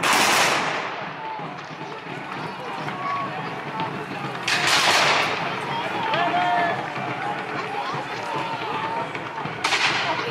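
Black-powder musket volleys: three loud bangs about four and a half seconds apart, the first two each trailing off over about half a second, with shouting voices between them.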